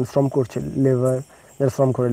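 Speech only: a man's voice speaking, with one syllable held drawn-out near the middle.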